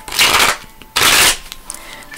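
A deck of tarot cards being shuffled by hand: two short bursts of card noise, about a second apart.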